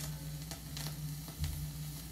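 Vinyl record surface noise as the stylus rides the groove with no music left: a haze of crackle and hiss with scattered clicks over a low steady hum.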